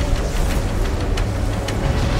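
A deep, steady rumble of swirling flames, with a few faint crackles, laid over background music.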